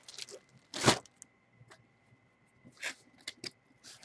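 Plastic wrapping crinkling in short bursts as hands handle a bagged jersey, loudest about a second in, with a few quicker rustles near the end.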